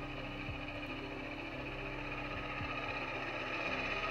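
Steady background sound from 360-camera footage playing back: a low, even hum with hiss and a few faint short downward sweeps.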